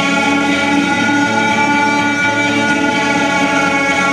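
Live rock band playing loud: electric guitars holding sustained, slightly distorted chords over drums, with no singing.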